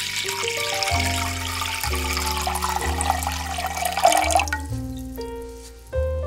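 A stream of water pouring into a stainless steel pot, stopping abruptly about four and a half seconds in. Background music with sustained notes and a bass line plays throughout.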